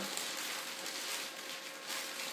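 Newspaper packing rustling and crinkling as it is pulled off by hand.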